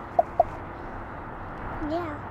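A short giggle of three quick high notes, about a fifth of a second apart, over steady outdoor background noise, with a brief voice sound near the end.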